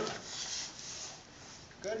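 Body and clothing rubbing and sliding across a padded vinyl treatment table as a person rolls from lying on his side onto his stomach, a soft rustle that fades out after about a second and a half.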